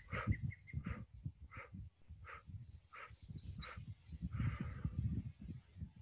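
A person exhaling in 'bump breathing', pushing the breath out through pinched lips in a series of short, evenly spaced puffs, about one every two-thirds of a second.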